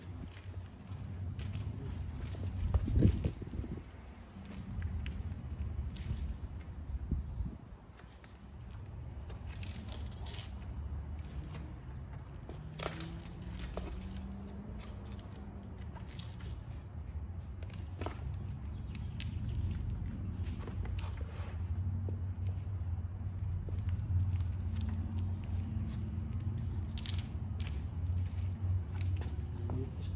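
Scattered clicks, knocks and scrapes of a disc golf pouch being fitted onto a disc golf cart's upright handle, with a louder knock about three seconds in, over a low steady rumble that grows from about eight seconds on.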